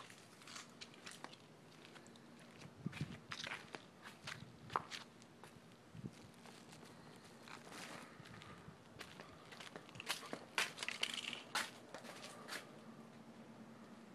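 Quiet footsteps on pavement scattered with dry leaves, with occasional light knocks and rustles coming in small clusters.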